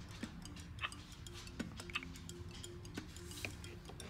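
Faint, irregular plastic clicks from a Baby Alive doll's mouth and a plastic spoon as spoonfed food is worked into the doll's mouth.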